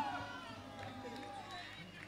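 Faint, distant voices of players calling out across the field, over low background chatter.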